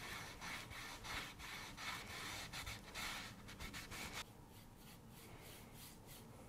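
A cloth rag rubbing quickly back and forth over a raw wooden paddle blade, wiping off excess stain and paint: a fast, dense scrubbing. About four seconds in it stops suddenly, leaving fainter paintbrush strokes on the wood.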